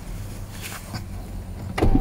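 Grafting knife paring the ragged, sawn-off end of a young orange sucker stump: a few faint scrapes and cuts of the blade on the wood over steady background noise.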